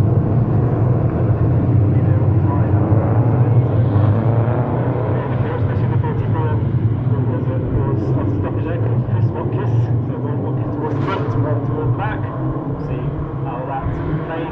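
Engines of a pack of oval race cars running round the track on a rolling lap before the green flag, a steady deep drone that fades slightly towards the end as the field moves away.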